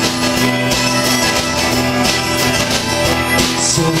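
Live band playing an instrumental passage: acoustic guitar, bass guitar and harmonica over drums, with long held notes. The singer comes back in right at the end.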